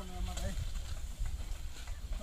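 Bullock cart on a dirt track: hoofbeats and wheel noise over a steady low rumble, after a short shout at the start.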